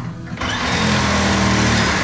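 Cordless drill running at speed in one continuous burst, starting about half a second in; loud and steady.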